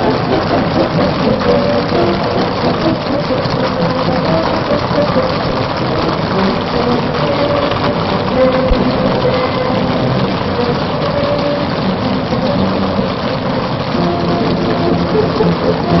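Band music playing held notes, heard on an old, band-limited recording under a dense crackling hiss.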